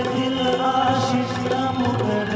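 Live performance of a Hindi film song by a stage ensemble: a few long, held low notes with other instruments playing over them.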